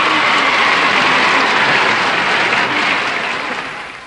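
Studio audience applauding, a steady wash of clapping that fades away near the end.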